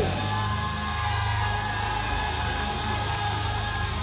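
Live church band music holding a sustained chord, steady level tones over a steady bass note, with no beat standing out.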